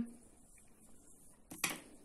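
Quiet handling of yarn and a crochet hook, with one short handling noise about one and a half seconds in.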